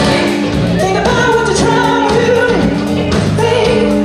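A woman singing lead into a microphone over a live band with bass guitar and drums, holding long, wavering notes.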